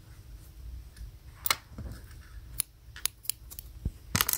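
About half a dozen sharp clicks and light metallic taps, the loudest about a second and a half in: small crafting tools such as scissors being picked up and handled on a hard tabletop.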